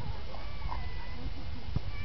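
Outdoor ambience: a steady low rumble, with faint high gliding calls over it, one about half a second in and another near the end.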